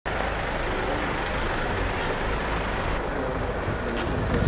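Steady street traffic noise with a vehicle engine running, with a couple of light clicks.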